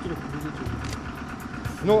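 Low, steady hum of an idling engine or machinery under faint background voices, with a man's voice coming in near the end.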